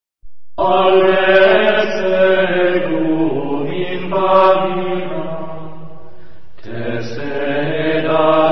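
Voice chanting a mantra in long, held notes, starting about half a second in after a moment of silence, with a new phrase starting about a second before the end.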